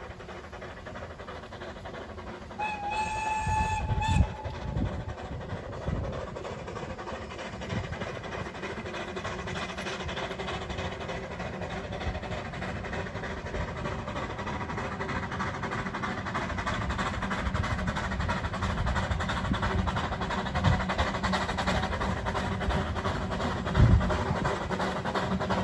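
Narrow-gauge steam locomotive whistle blowing once, a steady pitched note about one and a half seconds long, a few seconds in. Then the approaching locomotive running, growing steadily louder, with a few low thumps.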